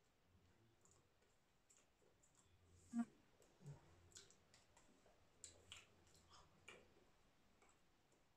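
Faint, scattered clicks and taps from a person's hands and mouth while signing, over near-silent room tone; the loudest click comes about three seconds in.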